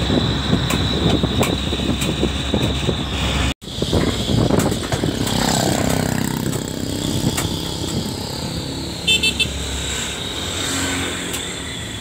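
Vehicle on the move: steady engine and road noise from a moving vehicle. The sound cuts out for a moment about three and a half seconds in, then the driving noise carries on. About nine seconds in there is a short run of high beeps.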